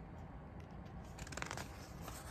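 Pages of a picture book being turned and handled: faint crisp paper rustles, bunched together a little past halfway.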